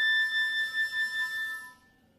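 Concert flute holding one long high note with a wavering vibrato, which fades away near the end.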